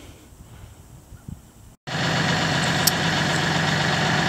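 Faint outdoor quiet, then from a little under halfway a steady engine idle starts abruptly and holds at an even pitch: a compact tractor's engine idling.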